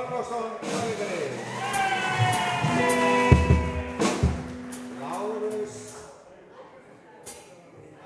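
Live rock band sounding out on stage: scattered drum and cymbal hits and a held low note from bass or keyboard, with a man's voice over the PA. The playing dies away about six seconds in.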